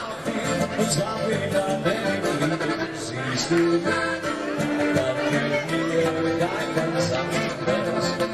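Live Volksmusik band playing: accordion carrying held melody notes over acoustic guitar and bass guitar.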